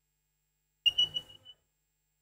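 A short, high-pitched whistle blast, about half a second long and wavering in loudness, with a little background noise under it; it starts about a second in and cuts off. It fits a coach's whistle at football training.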